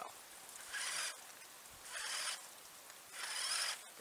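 Radio-controlled Polaris 800 RUSH Pro R model snowmobile throwing up snow with its track in three short bursts of hiss, each about half a second long.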